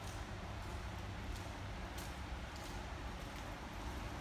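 Faint steady low hum of garage room tone, with a few soft ticks spaced well under a second apart, light footsteps on a concrete floor.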